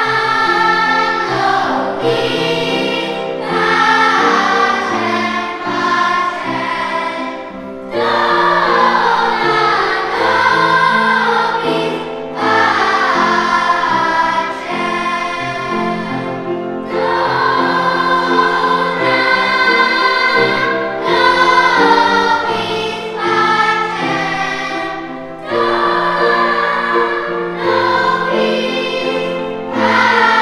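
Children's choir singing a song in sung phrases, with short breaks between phrases.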